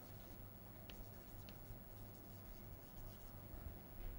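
Chalk writing on a blackboard: faint, short scratches and taps of the chalk as words are written, over a low steady hum.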